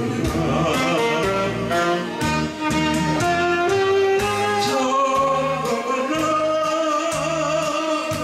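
A man singing into a handheld microphone over amplified instrumental accompaniment, his voice holding and sliding between long notes above a repeating bass line and a regular drum beat.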